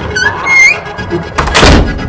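A door slamming shut with a loud bang about a second and a half in, preceded by a brief rising creak.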